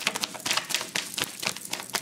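Tarot cards being shuffled by hand: a rapid, irregular run of light clicks and slaps as the cards strike one another.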